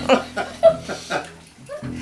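Short, high-pitched bursts of laughter, three about half a second apart, dying away near the end.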